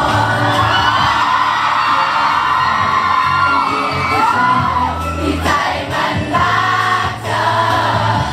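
A male pop singer singing live into a handheld microphone over a backing track, with shouts from the crowd.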